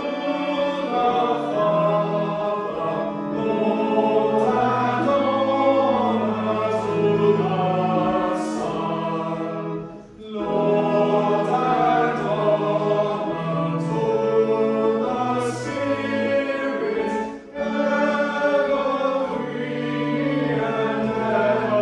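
Congregation singing a hymn together, with two brief breaks between lines, about halfway through and near the end.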